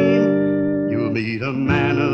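Country music from a 1957 single: steel guitar over a held chord, with the singing voice coming back in about a second in.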